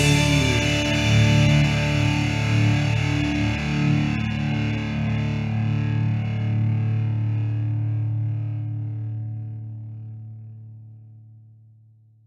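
Final chord of a rock power ballad on distorted electric guitar, held and left ringing, slowly dying away over the last few seconds.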